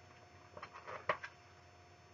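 A page of a paperback picture book being turned by hand: a few short paper rustles and a flap, the loudest about a second in.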